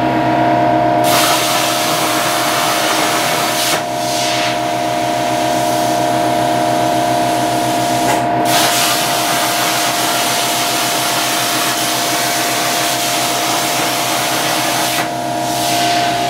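CNC plasma torch cutting 16-gauge sheet steel at 150 inches per minute: a loud, steady arc hiss that starts about a second in and dips out briefly three times, over a steady machine hum.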